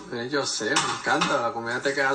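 Serving utensils clattering against a glass bowl as a salad is tossed, under a pitched, wavering voice that is the loudest sound.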